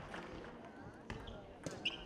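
Table tennis ball clicking off the bats and the table in a rally: a few sharp knocks, the last two close together near the end, with background voices in the hall.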